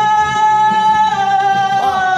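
A young man singing one long, high held note into a microphone over music. The pitch sags slightly about a second in.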